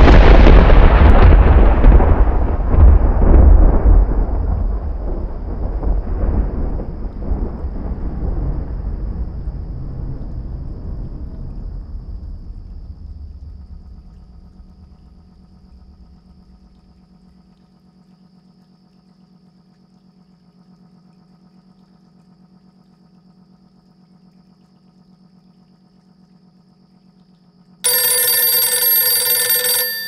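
A sudden, very loud deep boom that rumbles on and slowly dies away over about fifteen seconds, leaving a faint low hum. Near the end a bright ringing tone starts suddenly.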